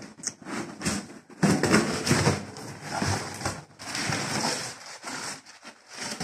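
Crumpled brown packing paper and cardboard rustling and crackling as a parcel is unpacked by hand, coming and going unevenly.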